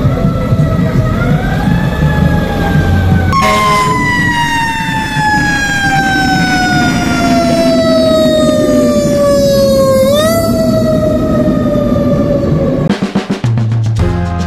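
Fire vehicle siren wailing over street traffic noise. Its pitch climbs, then falls slowly for several seconds, climbs again about ten seconds in and sinks away, stopping near the end.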